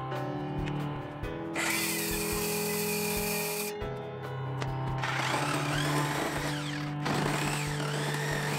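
An electric circular saw cutting through an OSB subfloor panel in two runs: a cut of about two seconds, then a longer one starting about five seconds in, with the motor's pitch rising and falling. Steady background music plays throughout.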